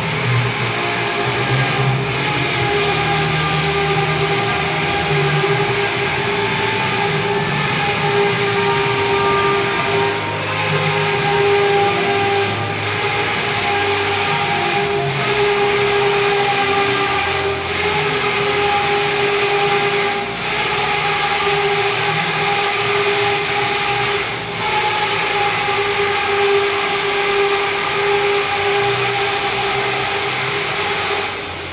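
Factory machinery running: a loud, steady drone with a constant whine and its overtones.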